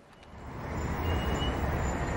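City road traffic: a steady rumble of engines and tyres that fades in over the first half second, with a few faint, brief high-pitched tones above it.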